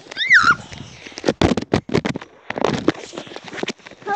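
A child's brief high squeal, then irregular sharp knocks and rustling from a phone being jostled and handled close to its microphone on a trampoline.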